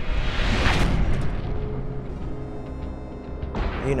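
Dramatic soundtrack music with a whoosh that swells and hits less than a second in, followed by long held notes over a low rumble.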